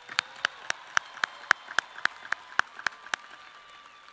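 Applause: a run of sharp, evenly spaced claps close to the microphone, nearly four a second, dying away about three seconds in, over faint clapping from the crowd.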